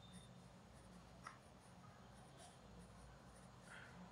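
Faint scratching of a coloured pencil on paper, drawing small circles in a few short strokes, over a low steady hum.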